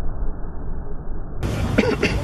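Dull, muffled outdoor rumble with the highs cut off. About a second and a half in, the sound suddenly opens up to full clarity, and a person gives a short cough-like vocal sound near the end.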